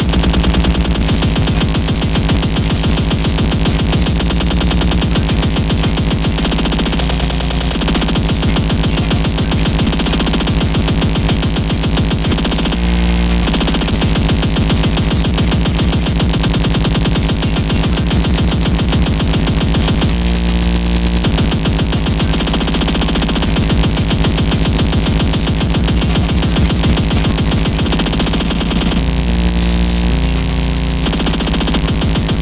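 Speedcore electronic music: a very fast, dense beat at a loud, even level. The texture breaks briefly about 13 seconds in and again about 20 seconds in.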